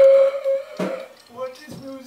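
A voice holding one sung note for about a second, then a few shorter notes ending on a lower held one.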